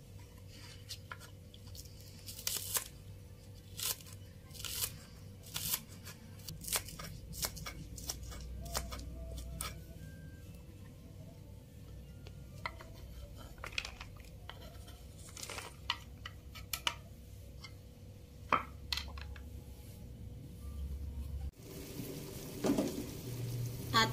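Kitchen knife chopping spring onions on a wooden cutting board: single, irregularly spaced cuts.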